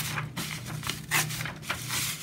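Printer paper being torn by hand along a sharp fold, in a handful of short rips and rustles.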